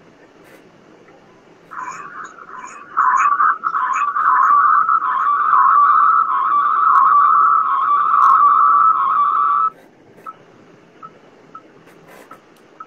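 A loud, steady whistling tone with a slight warble, starting in short sputters about two seconds in, holding for several seconds and cutting off suddenly near the end.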